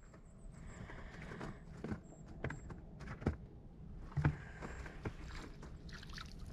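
Scattered knocks and bumps on a small fishing boat's hull over a low steady rumble, the loudest knocks a little after three seconds and about four seconds in.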